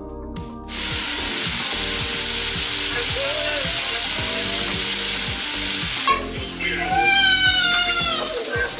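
Chicken wings deep-frying in a pot of hot oil: a loud, steady sizzle that starts about a second in and eases off shortly before the end.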